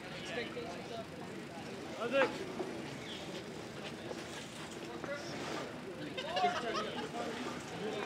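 Faint, scattered voices of spectators and players at a baseball field, with a short laugh about two seconds in.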